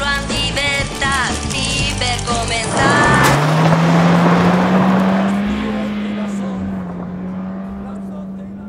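A wind-up chattering-teeth toy clicks rapidly for about three seconds with short squeaky chirps. A vehicle then rushes in on gravel with a sudden burst of noise, running over the toy, and its engine keeps running steadily as the tyre noise fades away.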